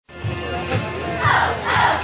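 A large group of children's voices over music with a steady beat, about two beats a second; the voices swell about a second in.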